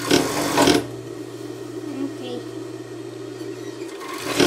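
Industrial overlock sewing machine's motor humming steadily while switched on, with a short loud burst of noise in the first second.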